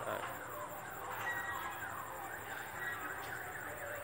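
Birds chirping in the background: a steady run of short, repeated notes that slide in pitch.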